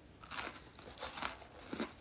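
A person biting into and chewing a red Supreme Oreo sandwich cookie: a few faint, short crunches.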